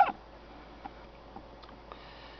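Quiet background: a faint steady low hum and hiss, with two faint small ticks about half a second apart near the middle. A short sharp sound comes right at the start.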